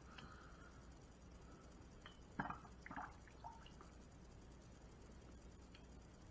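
Faint trickle, then a few small drips, as the last dregs run from a lidless stainless steel thermal carafe into a ceramic mug; otherwise near silence.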